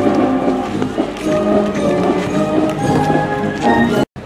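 Marching band playing: sustained brass chords over drum strokes. The music cuts off suddenly at the very end.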